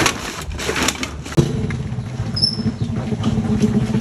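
Cans and plastic bottles rustle and clink in a sack. About a second and a half in, a small step-through motorbike's engine comes in, running with a low, even putter as the bike rolls slowly along.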